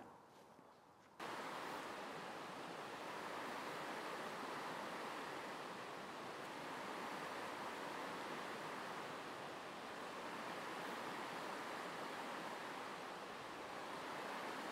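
Steady rush of a shallow river running over riffles, starting about a second in after a moment of near silence.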